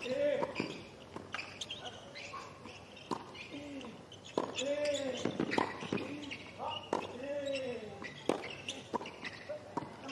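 Tennis rally on a hard court: a quick run of racquet strikes and ball bounces about once a second or faster, several shots carrying a player's short grunt.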